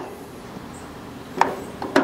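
Two sharp clicks about half a second apart, after a quiet first second, from a gas griddle's burner control knob being pushed and turned to light the middle burner.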